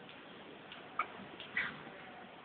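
Quiet room tone broken by two faint, short clicks, one about halfway through and another just after.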